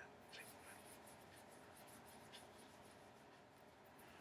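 Near silence: room tone with a few faint, short ticks and rustles.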